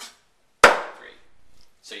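A cleaver chopping once through a chicken wing into a wooden chopping board: a single sharp whack about half a second in that dies away quickly.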